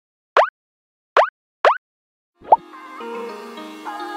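Animated intro sound effects: three quick rising cartoon 'bloop' sounds in the first two seconds, then a short upward blip about two and a half seconds in, after which light music begins.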